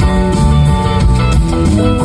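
Live rock band playing an instrumental passage: electric guitars over bass guitar and drums, loud and steady.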